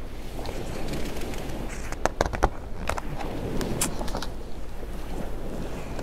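A page of a hardcover picture book being turned and handled: a few soft papery clicks and rustles over a steady low hum.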